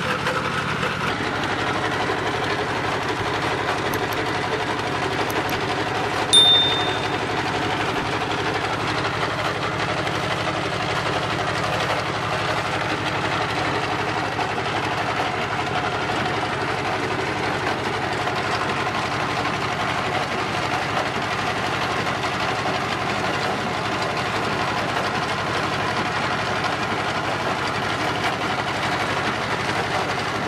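Screw-type mustard oil expeller running steadily, belt-driven, while pressing mustard seed. A brief sharp ringing clink about six seconds in.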